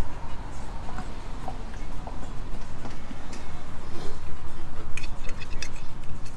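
Steady low rumble of outdoor background noise while a mouthful of taco salad is chewed. A run of light clicks and taps comes near the end as a fork works on the plate.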